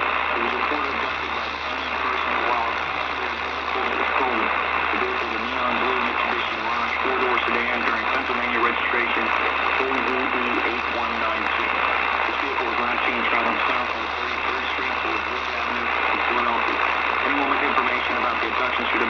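Voice of an AM radio emergency-alert broadcast coming from a portable radio's small speaker, muffled and hard to make out under steady static hiss and a low hum.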